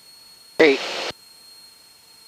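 A single clipped word of another pilot's call over the VHF aircraft radio, lasting about half a second and starting about half a second in. The rest is a faint steady hiss from the headset audio feed.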